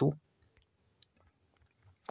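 A few faint, sharp clicks, about half a second apart, the first the clearest.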